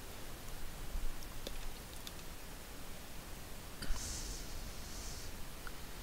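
A few faint computer mouse clicks over the steady hiss of a desk microphone, with a short soft hiss about four seconds in.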